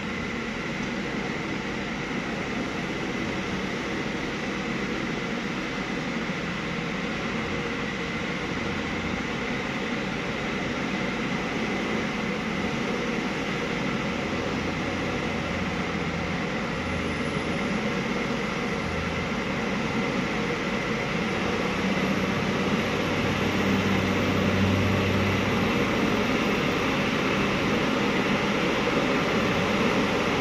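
Hino 260JD truck's diesel engine running under load as the truck crawls through deep mud, a steady drone that grows louder as it comes closer.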